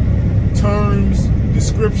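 Steady low drone of a truck cab cruising at highway speed, engine and road noise together. A drawn-out spoken "uh" comes in just before the middle.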